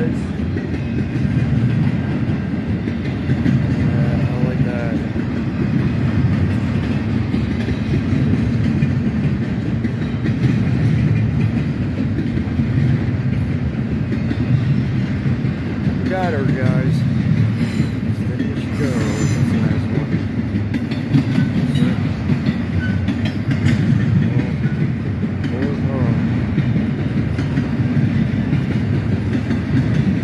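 Double-stack intermodal freight train rolling past, the loaded container well cars rumbling and clattering steadily over the rails.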